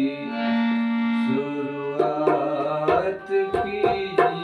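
Ghazal performance with harmonium and singing. A note is held for about a second, then tabla strokes come in about two seconds in and grow more frequent toward the end.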